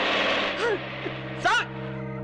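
A bus passes close by with a rush of noise. About half a second in, this gives way to a steady low drone from the film's background score, with two short shouted cries over it.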